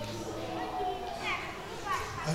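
Faint voices from the seated congregation in a hall, with a high child's voice and two short high falling sounds near the end.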